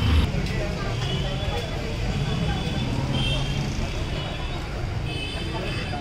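Busy street at night: motorbike and scooter traffic running, with voices of a crowd around.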